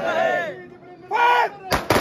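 Rifles of a ceremonial guard of honour firing a salute volley into the air: a ragged cluster of several shots in quick succession, starting near the end. Before the shots come loud drawn-out shouted calls.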